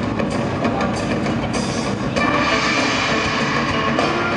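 Live stage music led by drumming, with repeated drum strikes. About two seconds in, a sustained chord swells in over the drums.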